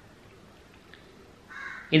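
A short pause in a man's speech, broken about a second and a half in by a single short caw of a crow.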